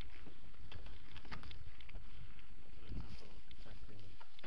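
Mountain bike rolling over a rough dirt forest track: a steady rumble of tyres on dirt, with frequent short knocks and rattles from the bike over bumps, and wind buffeting the camera's microphone.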